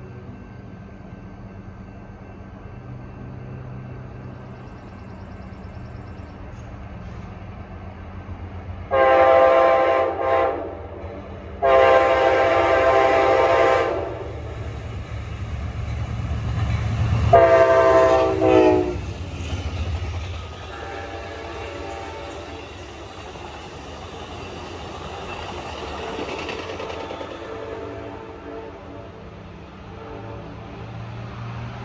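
Amtrak GE P42DC diesel locomotives leading a passenger train past: about nine seconds in the horn sounds a long blast, a short one, another long one, and a last long blast that falls in pitch as the locomotive passes, over the diesel rumble. The train's cars then run by and the rumble and wheel clatter slowly fade.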